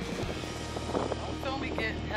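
Boat engine idling with a steady low hum, and a woman laughing over it.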